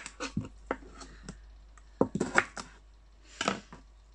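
A knife cutting through a cucumber onto a cutting board: a handful of separate chops and taps at uneven intervals, a couple of them louder about two seconds in.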